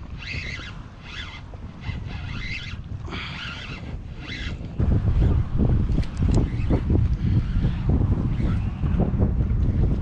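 Wind buffeting the camera's microphone out on open water, loud and gusty from about halfway through. Before that it is fainter, with short rushing bursts about once a second.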